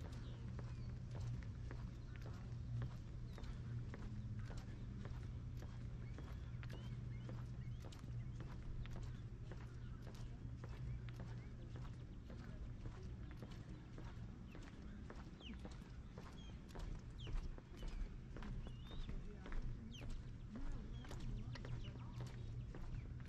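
Footsteps of a person walking, on a concrete walkway and then on wooden boardwalk planks, as a steady run of knocks over a steady low hum. A few short high chirps come in the second half.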